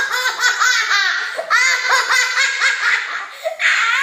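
A boy and a girl laughing hard, the boy while being tickled: loud, high-pitched laughter in quick repeated bursts, with two brief breaks.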